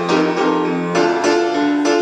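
Upright piano played solo, with chords struck again and again in a steady rhythm and no voice over them.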